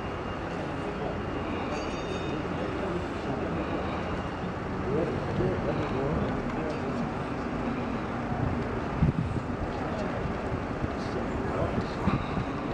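Steady outdoor street background noise with indistinct low voices, and a single short knock about nine seconds in.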